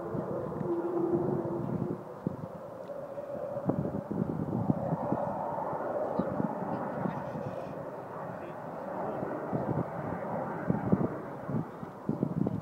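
Avro Vulcan bomber flying past at a distance: the steady jet rumble of its four Rolls-Royce Olympus turbojets, with a faint held tone in the first two seconds.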